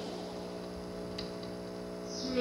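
Steady mains hum from the stage amplifiers, with one faint click about a second in.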